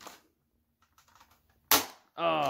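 A red toy blaster firing once near the end, a single sharp pop, after faint clicks of it being handled and primed.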